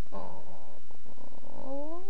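A cat's low, rough growl lasting about a second and a half, turning near the end into a short call that rises in pitch.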